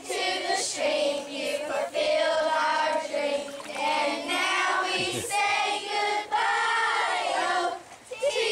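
A large group of schoolchildren singing a song together, phrase after phrase with short breaths between.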